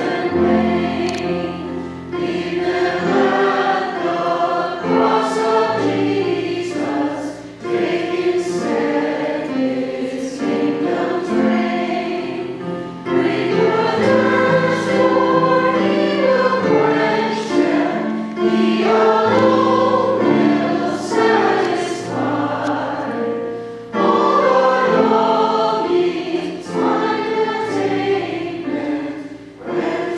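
A church congregation sings a hymn together in several voices, phrase by phrase, with short pauses for breath between lines and sustained low notes beneath.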